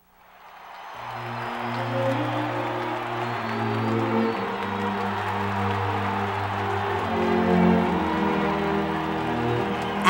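Music with long held low notes over a large crowd cheering and applauding, fading in from silence over the first second.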